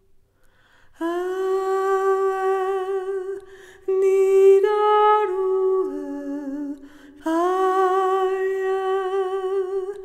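A woman's voice singing a slow, wordless melody with no accompaniment. The notes are long and held with a slight vibrato. The phrases begin about a second in, and there are short breaths between them. The pitch steps down lower near the middle before rising again.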